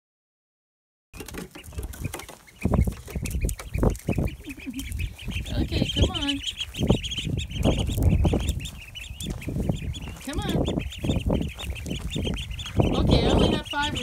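A brood of ducklings peeping continuously in a high, busy chorus, starting about a second in, over a low rumbling noise.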